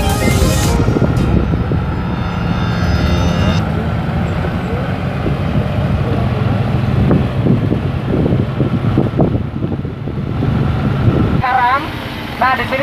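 Vehicle engine and road noise while driving along a road, a steady low rumble, with background music fading out over the first few seconds. Just before the end a man starts talking through a handheld microphone.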